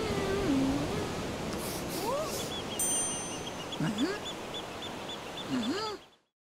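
Cartoon sound effects: a few short, squeaky, sliding vocal calls like a meow or a quack, over a steady hiss. A quick run of light ticks comes in the middle.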